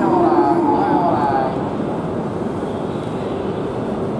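A Shinkansen train moving along the platform, heard as a steady rush of running noise, with voices briefly over it in the first second or so.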